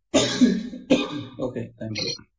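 A man coughing twice over an online voice-chat line, the coughs about three-quarters of a second apart, with a little voice sound trailing after them.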